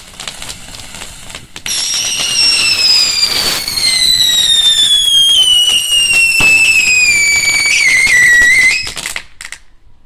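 Firework fountain crackling, then a firework whistle starts about two seconds in. It is one long shrill whistle, falling slowly in pitch for about seven seconds, before it cuts off suddenly.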